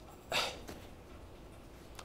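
A short sniff a third of a second in, then quiet room tone.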